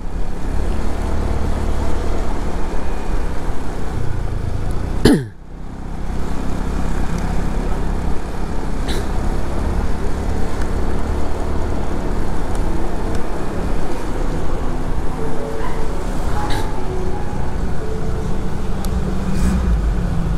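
Steady riding noise of a motor scooter on the move, picked up by a microphone inside the rider's helmet: a loud, even rush with the engine low underneath. About five seconds in, a short falling tone comes with a sudden brief dip in level.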